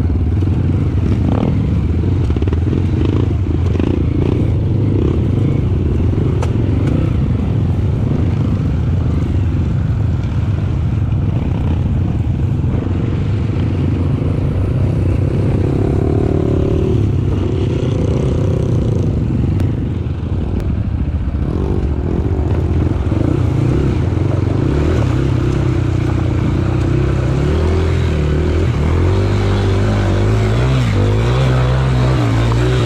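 Trail dirt bike engine running under load, heard from the bike itself, with clatter and scraping from riding over rough ground. Near the end the engine note turns steadier and lower.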